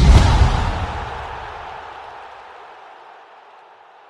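Outro sound effect: a deep boom under a rushing hiss, loudest at the start and fading away slowly over about three seconds.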